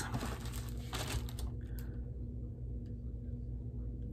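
Small plastic baggie crinkling as it is handled for about the first two seconds, then only faint room tone.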